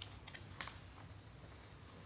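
A picture book's paper page being turned: a faint light rustle and tap about half a second in, over a low steady room hum.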